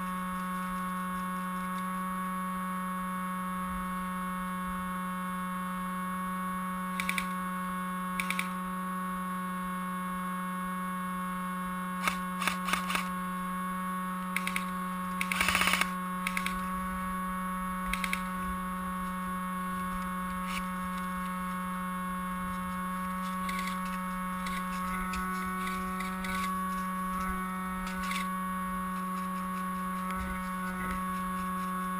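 A steady electrical hum with several fixed higher whines above it, with scattered sharp clicks, some single and some in quick runs of three or four, the longest cluster about halfway through.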